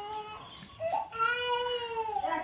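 Small child crying, upset at having its hair cut: a cry trailing off, then one long wail starting about a second in.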